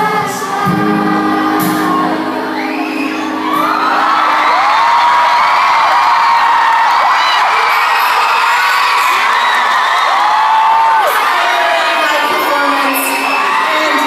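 Live pop song with a woman singing held notes, then from about four seconds in a large crowd screaming and cheering loudly over the music, picked up from among the audience.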